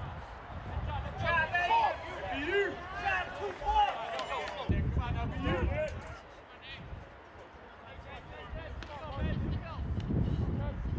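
Indistinct voices calling and shouting around a baseball field, loudest in the first half and again near the end, with no clear words.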